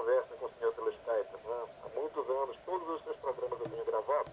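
Speech only: a caller's voice talking over a telephone line, thin and narrow in tone.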